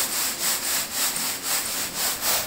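Crushed horse gram being winnowed in a woven bamboo tray (soop): the grains rasp and rustle across the bamboo weave with each shake, in a steady rhythm of about three strokes a second.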